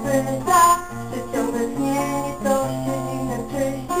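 Amateur sung poetry: an acoustic guitar accompaniment, with a low bass note changing about once a second under a voice singing the verse.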